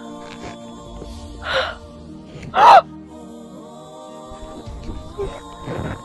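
Background music with long held tones, over which a young woman gives two short gasping exclamations, about a second and a half and two and a half seconds in, the second louder and more voiced.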